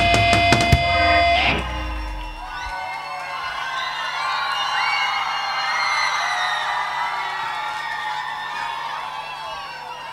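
A live band ends a song on a final chord with cymbal crashes, which stops about a second and a half in. Then a crowd, many of them children, cheers with high-pitched screaming and clapping.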